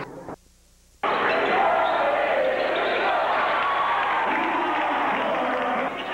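Basketball game sound: a basketball bouncing on a hardwood court amid steady crowd noise and voices in the gym. It cuts out almost to silence for about half a second near the start, then comes back.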